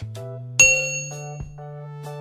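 Background music with a bright, bell-like ding a little over half a second in that rings out for about half a second: a notification sound effect for a subscribe-button animation.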